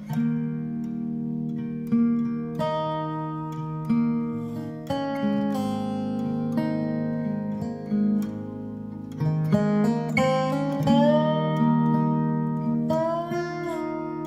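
Guitar intro: picked notes over low notes left ringing, with a few notes bending or sliding in pitch about ten and thirteen seconds in.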